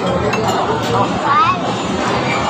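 Light clinks of tableware, cutlery and glasses on a restaurant table, over the steady chatter of diners.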